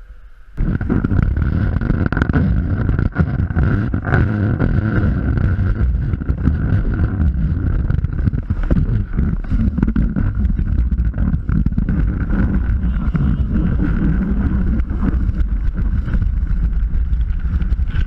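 Wind rumbling on the microphone of a snowboard-mounted action camera, loud and steady. It starts abruptly about half a second in.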